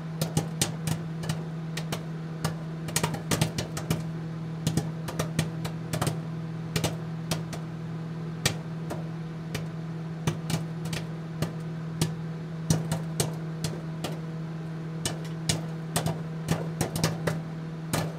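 End-card soundtrack: a steady low hum on one held pitch, with irregular sharp clicks and ticks scattered over it.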